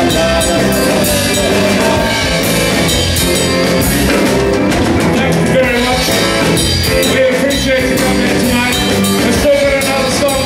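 Live rock band playing loud, with electric guitar, bass guitar and drum kit, and a singer's voice over the top.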